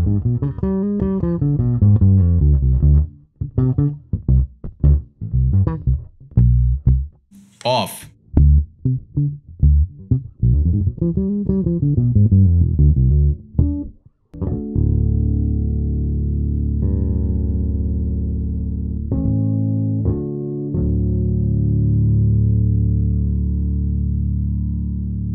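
Fodera Monarch Standard P four-string electric bass played through an amp with its tone knob at half and then rolled fully off: a fingerstyle line with sliding notes for about 14 seconds, then a single plucked note left ringing with long, steady sustain.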